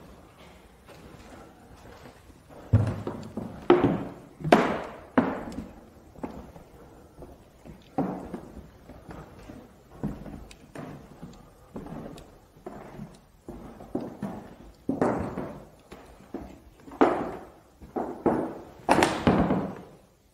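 Footsteps and knocking thuds on bare wooden floorboards, echoing in a large empty room, loudest about three to five seconds in and again near the end.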